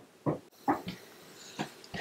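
A toddler making a few short, quiet vocal sounds.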